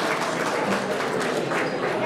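Audience applauding: many hands clapping at once in a steady, dense patter.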